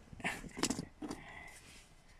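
Handling noise: several short clicks and rustles as a knife is handled near a plastic dash panel.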